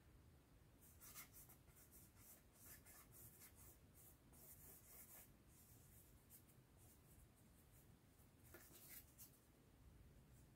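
Faint, soft scratching strokes of a small hand tool spreading latex over a foam mat tile, in short runs through the first half, a pause, then a few more strokes near the end.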